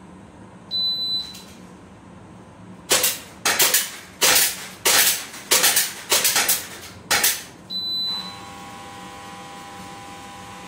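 Electronic shot-timer start beep, then a rapid string of about ten airsoft pistol shots as two shooters knock down a row of plates. A second timer beep near 8 s marks the end of the 7-second time limit, followed by a steady multi-tone sound for almost two seconds.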